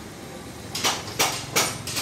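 Hammer blows in a motorcycle workshop: after a short pause, four sharp knocks come about three a second from a little under a second in.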